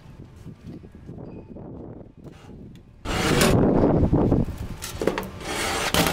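Stainless-steel library book-drop slot being slid: a loud scraping rub of metal starts suddenly about halfway in, with a second scrape near the end, after quieter rustling.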